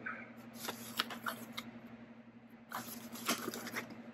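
Small cardboard box being opened and handled: faint scraping and rustling of cardboard with a few light taps, and a quieter pause a little past halfway.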